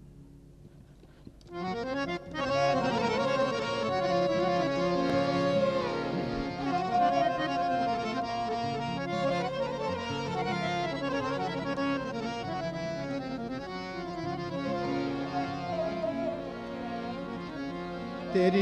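Harmonium playing a sustained melodic introduction to a ghazal. It comes in about a second and a half in, after a near-quiet start.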